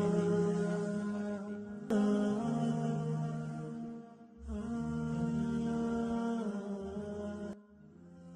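Background music of held, droning chords. The chord changes twice, about two seconds in and again a little after four seconds, and the music drops off sharply near the end.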